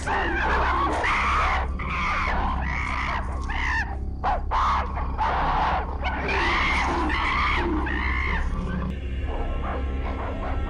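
Goats bleating loudly, one call right after another, over background music. The calls stop about nine seconds in, leaving only the music.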